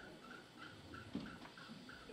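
Faint room tone in a pause, with a faint high chirp repeating about four times a second and a soft knock a little past halfway.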